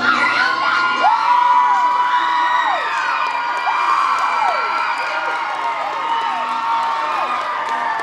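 Crowd cheering, with many overlapping high-pitched whoops and shouts.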